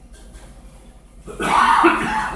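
A man coughing once, about a second and a half in, a harsh burst that fades over about a second.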